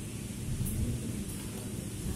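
Steady low rumble of machinery running, with two faint, light high-pitched ticks.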